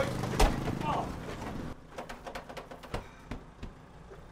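An ambulance cab door shutting with a thud about half a second in, followed by a run of quiet clicks and knocks from someone fumbling inside the cab. A brief voice comes just after the thud.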